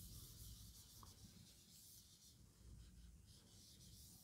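Faint rubbing of a felt whiteboard eraser wiping marker off a whiteboard, a soft hiss strongest in the first second and again about three seconds in.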